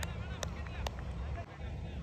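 Distant voices of cricket players calling across the field, with a few sharp clicks in the first second, over a steady low hum.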